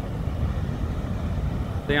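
Steady low roar of Niagara's American Falls, a heavy rumble of falling water with a hiss above it.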